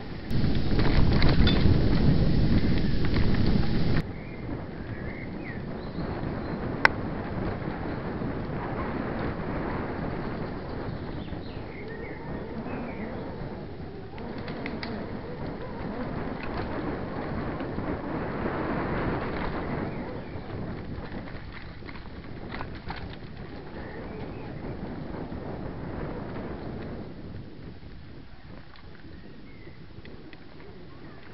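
Mountain bike rolling along a dirt forest trail: a steady rumble of tyres, rattle and wind on the microphone, much louder for the first four seconds before dropping abruptly. Birds chirp faintly now and then, and there is one sharp click a few seconds after the loud part.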